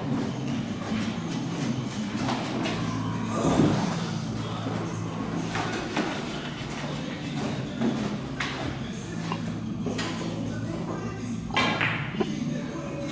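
Billiard-room background: a low murmur of voices over a steady hum, broken by a few scattered knocks and clicks. The loudest knock comes just before the end.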